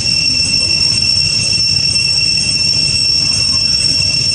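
A steady, high-pitched insect drone, unbroken, over a low rumble.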